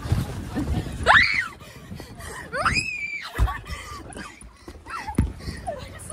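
High-pitched screams from young people: a short rising yelp about a second in and a longer held shriek about three seconds in. Under them are dull thumps and rubbing from bodies and the phone moving on an inflatable's vinyl.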